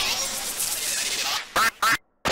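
Heavily distorted, pitch-shifted logo remix audio: a dense, noisy stretch of chopped sound effects, then two short, loud chopped blips near the end that each cut off sharply.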